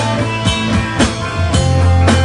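Rock band playing live: electric guitar, bass and drum kit, with drum hits about twice a second. The bass comes in heavier about one and a half seconds in.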